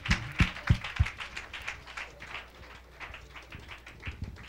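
Congregation clapping in rhythm, about three to four claps a second, dying away as a praise song ends, with a few deep thumps in the first second.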